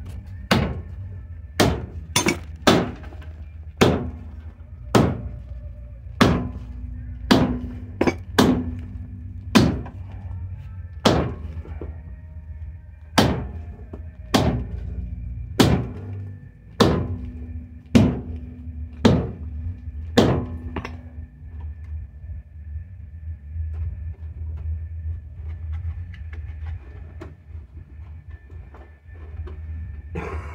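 Repeated hard blows from a long bar, hammering a new front half shaft into a Toyota T100's wheel hub. About one strike a second, some twenty in all, stopping about two-thirds of the way through.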